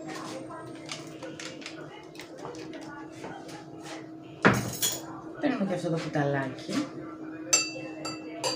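Metal cutlery clinking and rattling as a teaspoon is pulled from a cup of utensils, with a loud clatter about halfway through and a sharp, ringing metal clink near the end.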